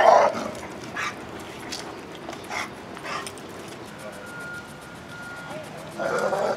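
A leash-aggressive rescue dog barking as he lunges on the leash at another dog on the street. A loud bark ends just after the start, then several shorter, fainter barks follow over the next few seconds. A high beep starts and stops repeatedly in the second half.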